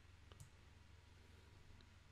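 Near silence with a low steady hum and a few faint computer-mouse clicks, one pair about half a second in and one near the end.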